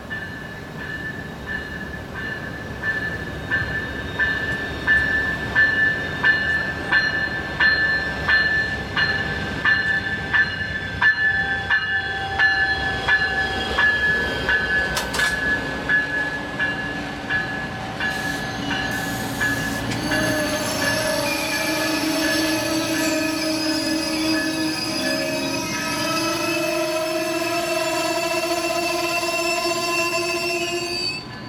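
Amtrak passenger train led by a Siemens ALC-42 Charger locomotive rolling through, with a crossing bell ringing in a steady run of strikes. From about twenty seconds in, as the coaches pass close by, several long wavering squealing tones from the wheels take over.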